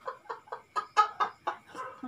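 Hearty human laughter: a rapid run of even 'ha' pulses, about five a second, loudest around the middle.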